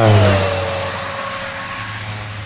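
De Havilland Beaver bush plane making a low pass: its engine note drops in pitch over the first half second as it goes by, then holds steady while slowly fading.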